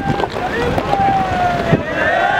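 Wind buffeting the microphone with a steady low rumble, over people shouting and calling out; one long drawn-out call rings out about a second in.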